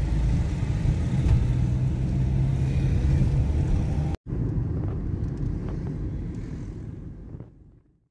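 Steady low road and engine rumble of a car driving in city traffic, heard from inside the cabin. It drops out for an instant about four seconds in and fades away near the end.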